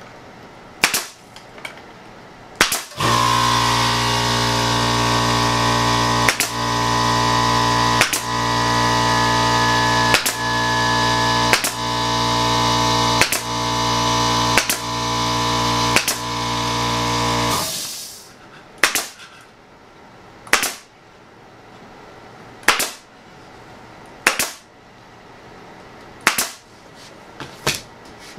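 Pneumatic staple gun firing staples into wood, one sharp shot every second or two, about fourteen in all. An air compressor starts about three seconds in and runs with a steady hum, then cuts off abruptly a little past halfway while the shots go on.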